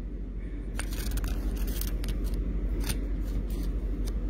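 Handling noise from a handheld phone: a low steady rumble with a hum underneath and about six sharp clicks scattered through.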